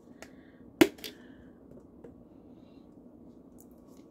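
A sharp plastic snap about a second in, with a couple of softer clicks around it: the flip-top lid of a plastic cheese shaker container being opened.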